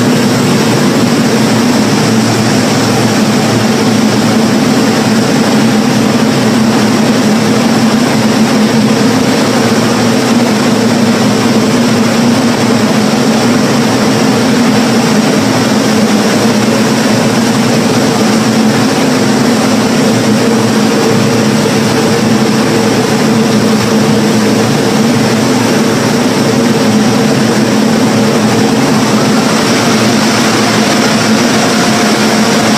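Loud, steady mechanical roar with a constant low hum, unchanging throughout, like a large motor or blower running.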